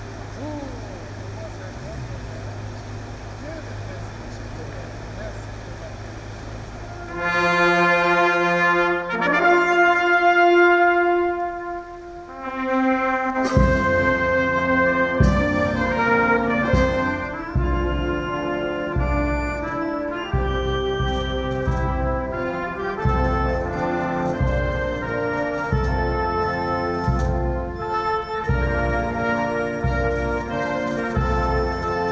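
A steady low hum for about the first seven seconds, then a military brass band: long held brass notes, and from about halfway the full band playing a national anthem with bass drum and cymbal strikes.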